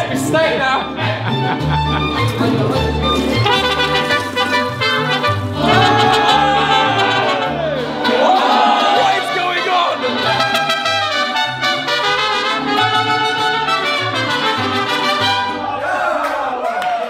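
A mariachi band playing live at close range: trumpets and violins carrying the melody over strummed guitars and a stepping bass line from a guitarrón.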